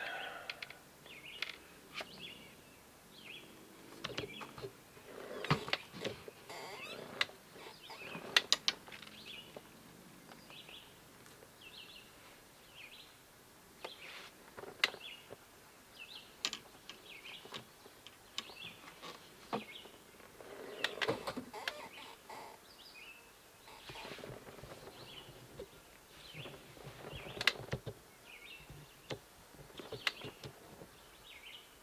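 Small birds chirping again and again in the background, over scattered clicks and rustles from a fishing rod and its line being handled and threaded through the guides.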